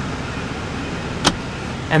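Steady hum inside a pickup truck's cab, with one sharp click a little past halfway.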